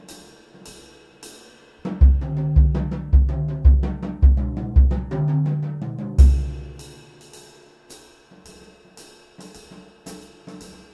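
Jazz drum kit played with sticks. Cymbal strokes keep time for about two seconds, then comes a loud phrase of fast strokes around the snare and toms over bass drum hits about twice a second, ending on a last bass drum hit about six seconds in. The cymbal time then picks up again.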